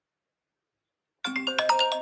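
Smartphone ringtone for an incoming call, a melody of short stepped notes, starting about a second in after silence.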